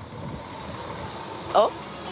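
A truck running steadily as it approaches, heard as an even engine-and-road noise without distinct tones.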